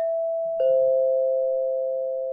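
Two-note ding-dong doorbell chime: a higher note, then a lower note struck just over half a second later, both ringing on and slowly fading.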